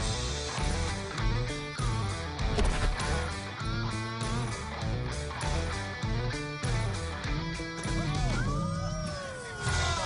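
Background music with guitar and a steady beat, with a brief sliding, wavering tone near the end.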